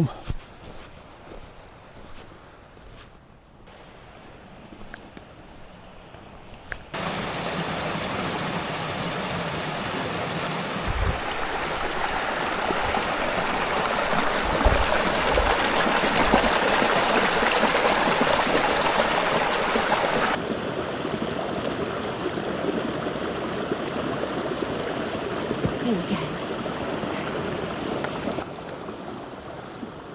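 River water running over boulders, a steady, even rush of water. It starts abruptly about seven seconds in after a quieter stretch, and drops to a softer rush about twenty seconds in.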